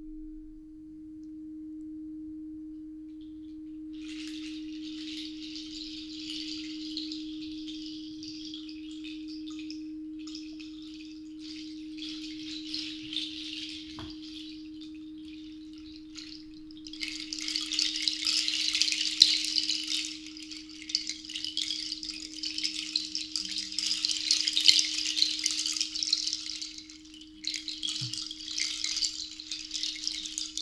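Alchemy crystal singing bowl ringing one steady tone while a seed-pod rattle is shaken. The rattle is soft from about four seconds in and much louder from about seventeen seconds in.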